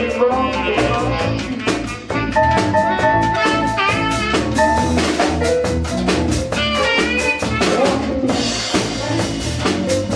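Live blues band playing an instrumental stretch with no vocal: a drum kit keeping a steady beat and electric guitar, with long, bending lead notes held over the top.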